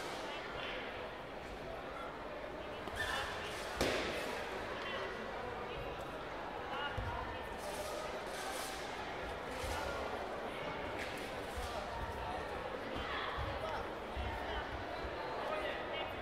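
Taekwondo bout in an echoing sports hall: scattered shouts and chatter from coaches and spectators, with dull thuds of feet on the foam mat and one sharp smack about four seconds in.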